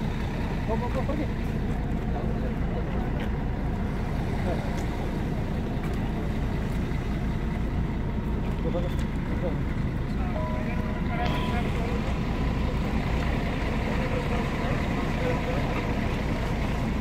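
Steady low mechanical rumble, like a running engine or vehicle, with faint voices over it; a brief whistle-like tone sounds about ten seconds in.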